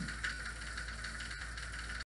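Room tone with no speech: a steady, faint hiss and low hum from the recording, with one faint click a little past halfway.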